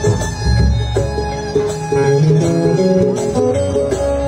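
Live band playing an instrumental interlude of a Bengali folk song: a stepping plucked-string melody over bass and a steady beat, with no voice.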